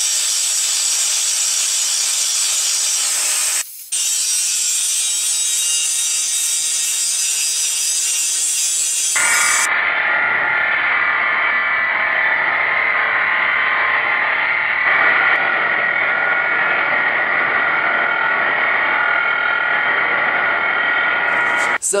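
Handheld 4½-inch Milwaukee angle grinder with its disc held against steel for a spark test, a steady high grinding hiss. It breaks off briefly about four seconds in, and from about nine seconds the grinding sounds duller, with less of the top end.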